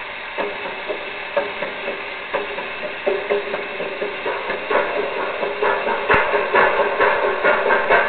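Percussion played with water and water-filled vessels: sparse hits with a short ring, growing into a faster, louder, steady rhythm.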